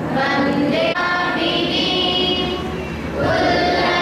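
A large group of voices singing together in unison, in long held notes.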